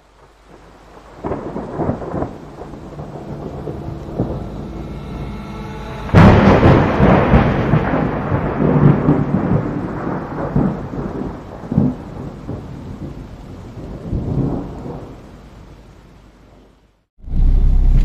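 Thunderstorm sound effect: rain with rolling thunder, fading in from silence. A loud thunderclap comes about six seconds in and rumbles away slowly, and the sound fades out shortly before the end.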